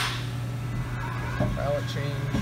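Haas MDC 500 CNC mill drill center running its program with the spindle at 1,500 RPM, a steady machine hum muffled by the closed enclosure door. A loud hiss fades away in the first moment.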